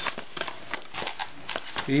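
Cardboard Priority Mail flat-rate box being handled and its flap pried open by hand: a run of irregular light crackles, scrapes and taps.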